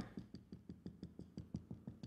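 Marker tip tapping a whiteboard in a quick, even run of faint ticks, about seven a second, as short dashes are dotted around a drawn circle.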